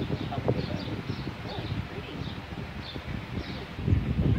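Outdoor ambience: an uneven low rumble, like wind on a phone microphone, with short high chirps of small birds scattered throughout.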